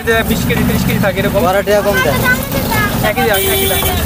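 A woman talking, over a steady low rumble of outdoor market and traffic noise.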